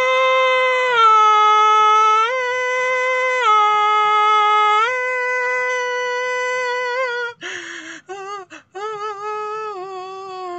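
A man's voice singing wordless, improvised long held notes, fairly high, stepping between a few pitches in a slow melody. About seven seconds in the voice breaks into a rough, wavering sound with short gaps, then carries on more softly.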